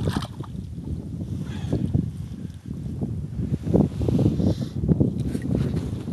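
Wind rumbling on the camera microphone, with irregular knocks and rustles from the camera being handled.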